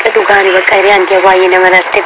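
Speech: a person's voice talking continuously.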